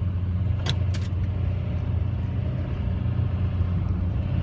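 Chevrolet one-ton diesel dually truck's engine running with a steady low drone, heard from inside the cab as the truck pushes against the back of a semi trailer. Two faint clicks come about a second in.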